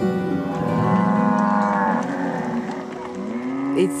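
Cattle lowing: one long moo that rises and falls over the first two seconds, and another beginning near the end.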